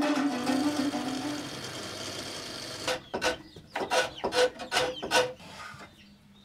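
Komuz, the Kyrgyz three-stringed plucked lute, with its last strummed notes ringing and fading. About three seconds in comes a quick run of rasping strokes, about four a second: a hand-held blade shaving a block of wood.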